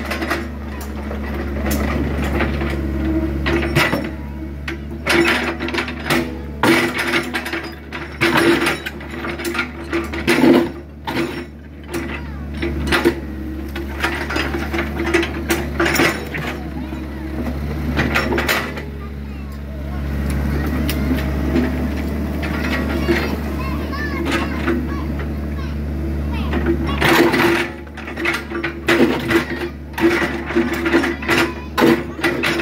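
Mini excavator's diesel engine running steadily under hydraulic load as its bucket digs, with repeated sharp knocks and scrapes of the steel bucket against broken concrete, rock and soil.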